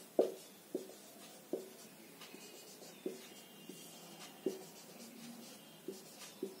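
Marker writing on a whiteboard: a string of short squeaks and taps, one for each stroke of the letters, coming at irregular intervals.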